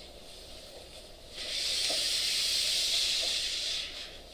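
A steady hiss that starts suddenly about a second and a half in and stops just before the end.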